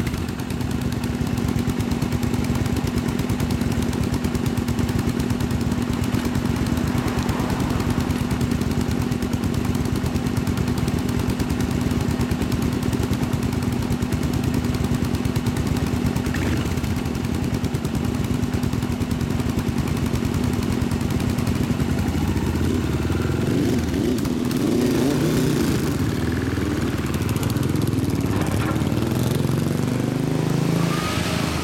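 Custom cafe-racer motorcycles idling with aftermarket exhausts, a loud steady engine drone with rapid exhaust pulses. From about three-quarters of the way in, the revs rise and fall as the bikes pull away.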